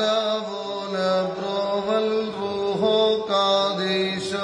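A group of boys and a man singing a Syriac kukilion hymn together, chanting a melody in long held notes that step from pitch to pitch.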